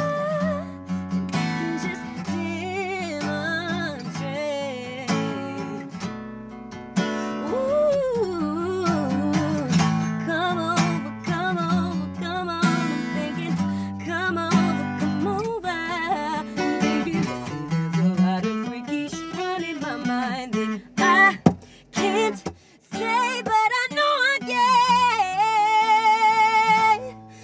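Live acoustic performance: a woman singing long, wavering, gliding vocal lines over a Taylor acoustic guitar. The music breaks off briefly about three-quarters of the way through, then the voice comes back louder.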